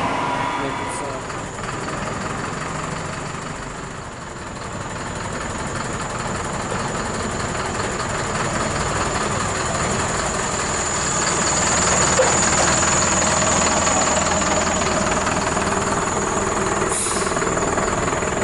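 A motor vehicle's engine idling steadily, with a constant high whine over it; the engine grows louder from about ten seconds in.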